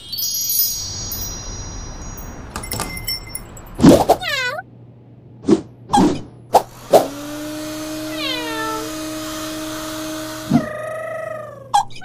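Cartoon sound effects and cartoon cat vocal sounds: a high sparkly chime and a hiss at the start, short meow-like cries with falling pitch, then a steady two-note hum with a hiss over it for about three and a half seconds, with more cat cries over it and another near the end.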